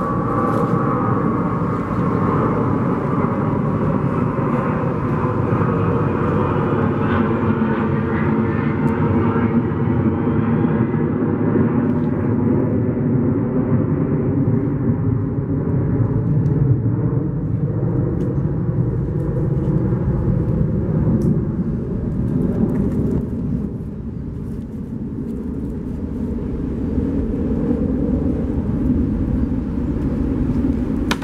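A loud, steady engine drone whose pitch slowly drifts up and down, with a few faint knocks in the second half.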